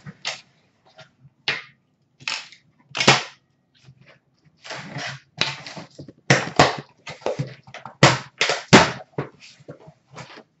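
Cardboard shipping case being handled and opened by hand: a string of short, sharp rips, scrapes and knocks of the tape and flaps, some louder than others.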